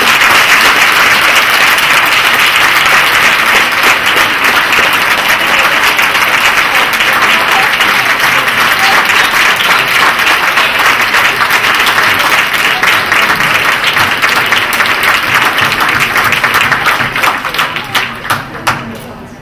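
A large audience applauding: dense clapping that keeps up steadily and begins to die away near the end.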